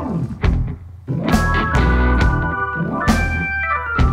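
Blues-rock band playing an instrumental break with a Hammond-style organ to the fore over bass and drums. The band stops briefly about a second in, comes back with held chords, and a falling run of notes sounds near the end.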